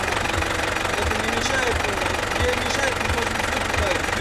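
Tractor engine running, heard from inside the cab, with a low thud in its running about twice a second. A man's voice is faintly heard over it.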